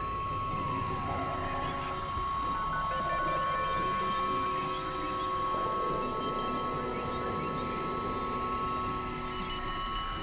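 Experimental electronic drone music from synthesizers: two steady high tones held over a dense, wavering noisy texture, with short rising chirps sounding above it. The texture shifts a little past the halfway point.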